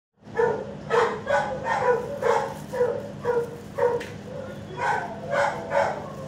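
Dog barking repeatedly: about a dozen sharp barks roughly half a second apart, with a short pause around four seconds in, over a steady low hum.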